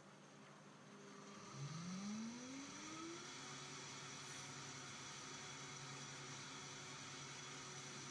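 High-powered blender running its cleaning program on a little soapy water: the motor starts about a second and a half in, rises in pitch over a couple of seconds, then runs at a steady, faint hum.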